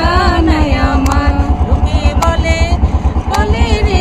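A river boat's engine running steadily under way, a fast, even low chug.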